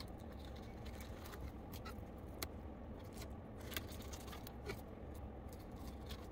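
Faint, scattered clicks and scrapes of a thin knife against a plastic cutting board as bluegill are filleted by hand, over a steady low hum.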